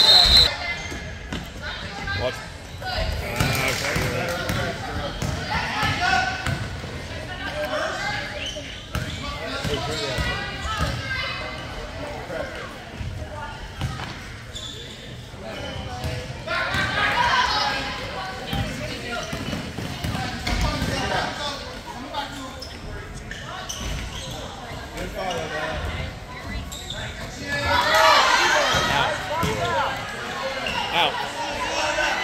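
Basketball game in a gym: the ball dribbling on the hardwood floor amid spectators' voices and shouts, which get louder around the middle and near the end. A short, shrill referee's whistle sounds right at the start.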